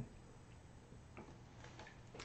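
Near silence: faint room tone with a few soft ticks, one about a second in and a couple more near the end.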